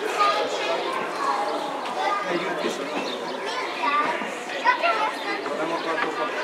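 Indistinct chatter of several people's voices, no clear words, continuing throughout.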